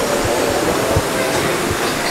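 Steady noisy ambience of a crowded indoor aquarium, a hum of distant crowd chatter, with four short low thumps spaced unevenly through it.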